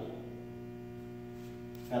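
Steady electrical mains hum: a low, even buzz made of a stack of evenly spaced tones, unchanging throughout.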